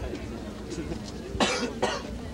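Two short coughs, the second shortly after the first, over a faint murmur of voices.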